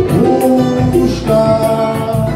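Live samba: voices singing over strummed cavaquinho and acoustic guitar, with a steady pandeiro rhythm.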